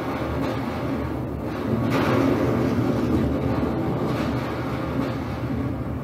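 Steady low mechanical rumble, like a train or heavy vehicles, from a documentary soundtrack, swelling slightly about two seconds in.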